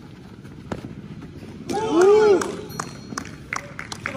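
A man's loud, drawn-out shout about two seconds in, rising then falling in pitch, followed by a few sharp clicks and knocks.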